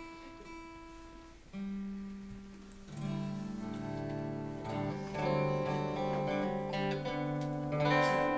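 Acoustic guitar being tuned down to an alternate tuning: single strings plucked and left to ring, a new low note about one and a half seconds in, then several strings sounding together from about five seconds in.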